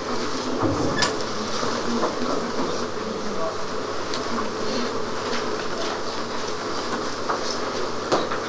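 Classroom room tone: a steady hum and hiss, with occasional faint clicks and paper rustles as students handle their textbooks and write.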